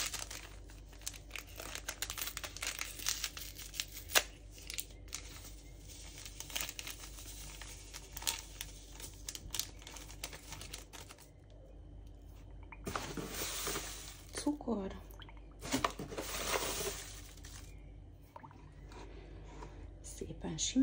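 Paper sachet of vanilla sugar crinkling and being torn open, with many small crackles, then a spoon stirring and scraping powder and milk in a plastic measuring jug in two longer stretches in the second half.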